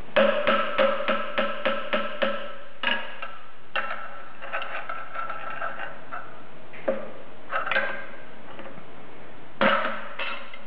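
Hammer blows on a steel pry bar wedged under a bearing collar, each strike ringing sharply: a quick run of about four taps a second for the first two seconds or so, then scattered single blows with some scraping between. The blows are driving the bearing and collar off the shaft of a Bridgeport mill's front variable-speed pulley.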